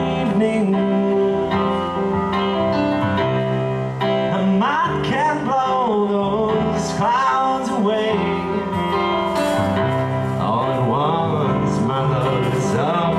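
Live song played and sung through a PA: sustained chords on an electronic keyboard, with a man singing into the microphone. The vocal lines glide in pitch and stand out most from about four seconds in and again near the end.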